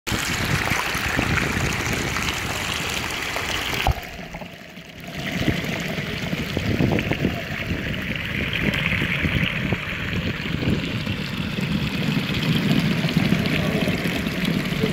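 Shallow stream trickling over stones, heard at the surface. About four seconds in the sound briefly drops and goes dull as the microphone goes under. It then comes back as a muffled underwater rush of the current, heavier in the lows.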